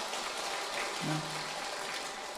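Audience clapping, a steady patter of many hands, with a brief murmured voice sound about a second in.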